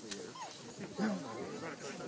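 Indistinct voices of several people talking at once in the background, with no clear words.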